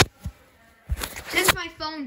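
The recording breaks off with a click into nearly a second of silence as the camera dies, then noise returns and a voice starts talking near the end.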